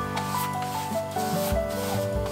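Flat bristle brush scrubbing thick white paste across a stretched canvas in several back-and-forth strokes, a dry scratchy rubbing, over background music.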